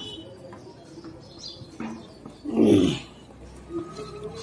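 A German Shepherd puppy makes one short, low vocal sound that falls in pitch, about two and a half seconds in.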